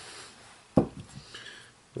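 Hands handling fly-tying materials at the bench: one soft knock about three quarters of a second in, then faint rustling.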